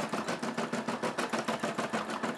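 Brother SE600 embroidery machine stitching out a design, its needle driving up and down in a rapid, even rhythm of mechanical clicks.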